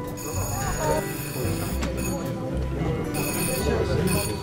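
An electric bell ringing in several bursts: the arrival signal as racing pigeons are clocked in at the loft. Behind it there is the low murmur of people talking.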